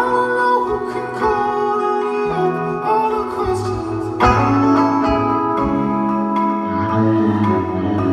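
Live band music recorded from the audience: sustained guitar and keyboard chords over shifting bass notes and drum hits, with a singing voice.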